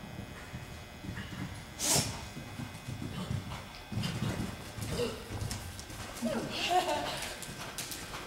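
Horse cantering on soft indoor-arena footing, its hoofbeats coming as uneven low thuds. There is a sharp knock about two seconds in, and a person's voice near the end.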